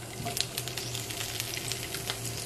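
Olive oil sizzling in a skillet as asparagus spears fry, with many small scattered pops and crackles: water left on the freshly rinsed spears spatters in the hot oil.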